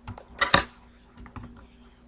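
Computer keyboard and mouse clicks: a loud pair of clacks about half a second in, then a few lighter clicks.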